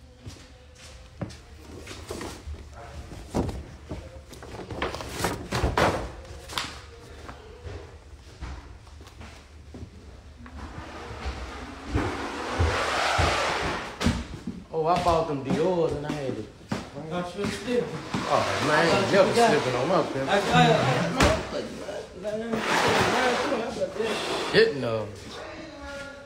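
Scattered knocks and bumps in the first half, then a man's voice talking loudly from about halfway on. The speech is not made out as words.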